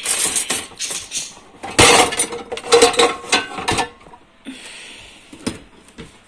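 Bosch dishwasher's loaded racks rattling, with crockery clinking, as the racks are pushed in and the door is shut, ending with a click from the door. The door fails to latch.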